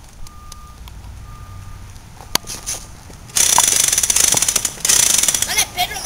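Toy gun firing: two loud bursts of fast, even rattle, each about a second and a half long with a brief gap between, starting about halfway in.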